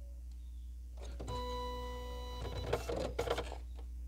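Epson LX-300 dot-matrix printer powering up: its motors give a steady whine for about a second, then a second of irregular mechanical rattling as it positions the head and paper.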